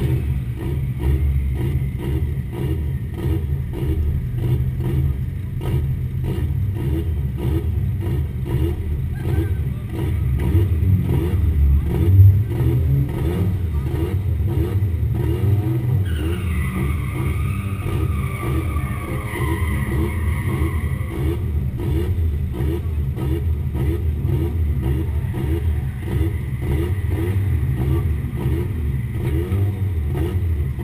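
Car engine idling in a drift-event staging lane: a steady low rumble with an even pulse. About halfway through, a higher wavering tone joins for about five seconds.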